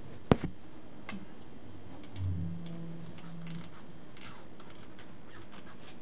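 A single sharp click a moment in, then quiet room tone with a few faint ticks and a brief low hum in the middle.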